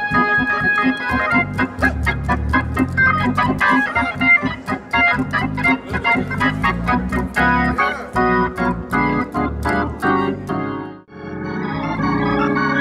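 Hammond organ played live with quick, crisply attacked chords and runs over sustained bass. Just after eleven seconds the sound drops away briefly and a different fuller organ chord begins.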